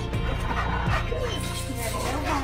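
A dog whining and yipping in excited greeting as it pushes against its handler, over background music.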